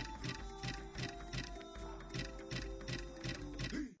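Flame Dancer online slot game's music and reel-spin sound effects during a free spin: steady tones under a regular ticking, about four ticks a second.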